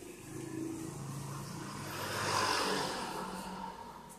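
A vehicle passing, its noise swelling to a peak about halfway through and then fading.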